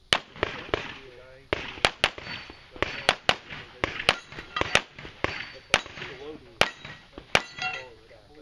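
Pistol shots fired rapidly in pairs and short strings, about eighteen in all, with brief gaps between strings.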